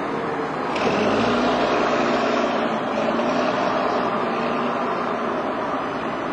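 Diesel engine of a double-decker bus passing close by and pulling away. It gets louder about a second in, then fades slowly as the bus moves off.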